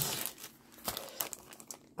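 Clear plastic packaging crinkling as a bagged set of metal cutting dies is picked up and handled, with a few short, sharp crackles about a second in.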